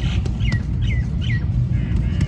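A bird calling a series of short chirps that each fall in pitch, about two a second, over a low steady rumble.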